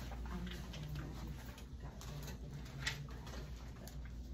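Quiet classroom room tone: a steady low hum with a few faint low tones, and a single light tap about three seconds in.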